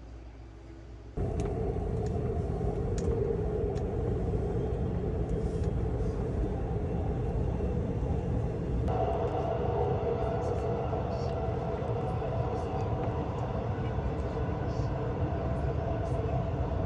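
Subway train running, heard from inside the car: a steady rumble with a humming tone, starting abruptly about a second in.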